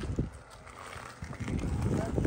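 Low rumble of wind and handling noise on a phone microphone as the camera is moved, with a soft knock shortly after the start.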